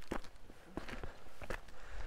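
Footsteps on bare dirt ground: three steps, about one every two-thirds of a second.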